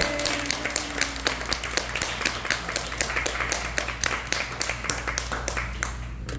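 Audience applauding in irregular, distinct claps that stop near the end. The final held notes of the music die away during the first second.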